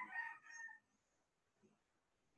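A rooster crowing once, faintly, in the first second.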